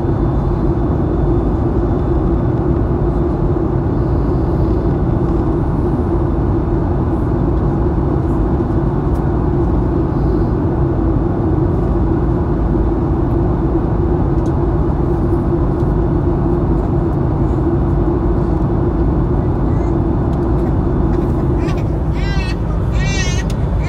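Jet airliner cabin noise beside the turbofan engine on descent: a loud, even rush of engine and airflow with a steady low hum running under it.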